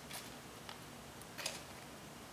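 Faint ticks and rustles of hands setting cabbage seedlings into potting soil in a small plastic pot, with a short scratchy rustle about one and a half seconds in.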